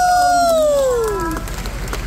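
One person's voice holding a long, high drawn-out call that slides down in pitch and fades out around the middle, like a hyped-up announcer stretching out a word or a cheering 'woo'.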